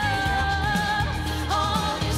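Live pop-rock song: a woman sings a long held note over a band with electric guitar, then moves to a new note about one and a half seconds in.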